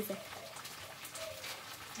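Tortillas frying in oil in a pan: a faint, steady sizzle with scattered small crackles.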